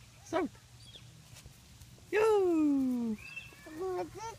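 A brief vocal call, then about two seconds in a loud cry lasting about a second whose pitch falls steadily.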